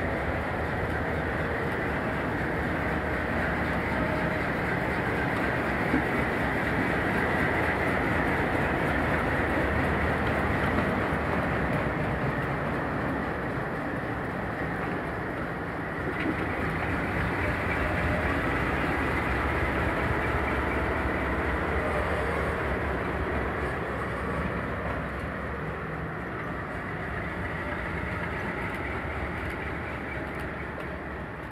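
Alco C424 and C430 diesel locomotives, with their 251-series engines running, passing slowly with a freight train, with the wheels sounding on the rails. The sound is steady and continuous, growing slightly louder as the units come level.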